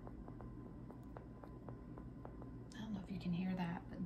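Faint clicks, about four a second, from a raw chestnut squeezed between the fingers. The clicking marks the nut as a bad one to discard.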